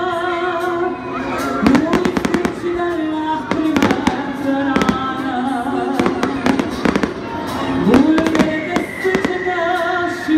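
Aerial fireworks bursting overhead in clusters of sharp bangs and crackles, starting about a second and a half in and recurring every second or two, over loud music with sustained, gliding notes.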